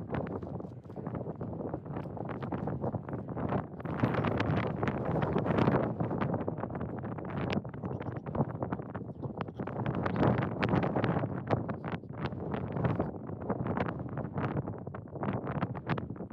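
Wind buffeting the microphone, a gusty rushing that swells and falls, loudest about four to six seconds in and again around ten seconds.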